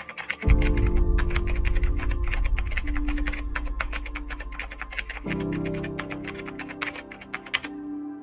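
Rapid typing on a computer keyboard, a fast run of key clicks that stops shortly before the end, over background music; a deep bass note comes in about half a second in.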